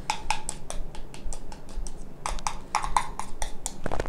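Spoon clicking and scraping against a small bowl while stirring hair dye and developer together, a few irregular clicks a second with a short pause just before the middle.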